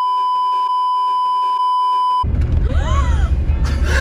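A steady high-pitched bleep tone added in editing, lasting about two and a half seconds and cutting off suddenly. Then the road noise of a moving car cabin comes in with laughing voices.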